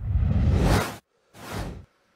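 Whoosh sound effects of a TV news channel's logo ident: a loud sweep rising in pitch for about a second that cuts off suddenly, then a shorter, quieter whoosh.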